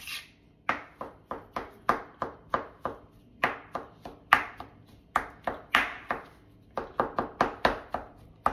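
Kitchen knife finely chopping mushroom centres and stems on a plastic cutting mat: a run of sharp knocks, about three a second, with a couple of short pauses.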